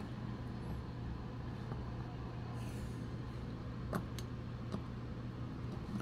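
Steady low background hum with a few faint light clicks of a small Phillips screwdriver on a corroded battery-contact screw as it is worked loose, two clicks close together about four seconds in.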